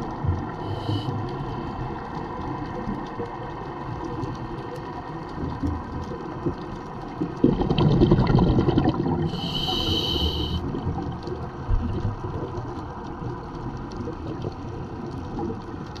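Underwater noise picked up through a camera housing: a steady low rumble of moving water. About seven and a half seconds in comes a louder burst of bubbling, then a short high hiss around ten seconds, like a scuba diver's exhaled bubbles followed by an inhale through the regulator.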